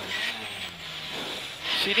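Rally car engine heard from inside the cockpit, running with a steady low note that sinks a little as the car eases off, then grows louder again near the end.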